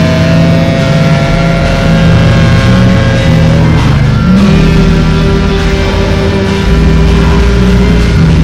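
Noise music: a loud, dense wall of distorted drones. A held higher note fades out about halfway through, and a lower held note comes in after it.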